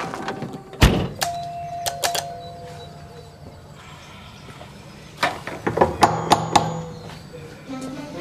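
A heavy thud about a second in, followed by a short ringing tone with a couple of clicks, then a quick run of sharp knocks and clicks a little past halfway.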